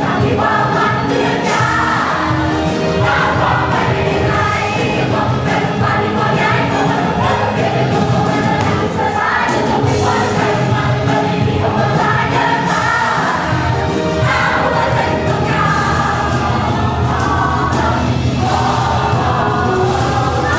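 Ensemble cast of a stage musical singing together as a choir over loud musical accompaniment.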